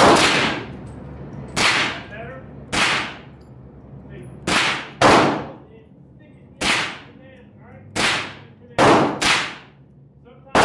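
Nine gunshots at a shooting range, each a sharp crack with a short echo, fired at uneven intervals, including two quick pairs about half a second apart.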